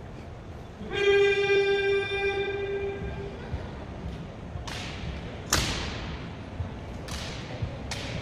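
A loud held note with a steady pitch starts suddenly about a second in and fades away over about two seconds. From halfway on come four sharp smacks echoing off the marble hall, the sound of the honor guard's rifle and boot drill on the stone floor.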